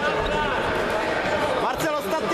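Hall-wide chatter: many voices talking over one another from spectators, coaches and other mats, with a short thump near the end.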